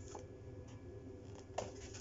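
Cardboard food boxes being handled and shifted, faint rubbing with a few light taps, the clearest about one and a half seconds in.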